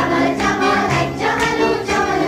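Background music with singing voices over a steady beat.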